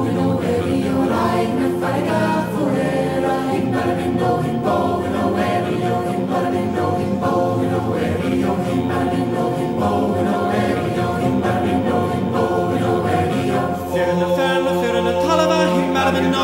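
Unaccompanied choir singing sustained, layered chords in an Irish-language song. The sound briefly dips about two seconds before the end, then a fuller chord comes in.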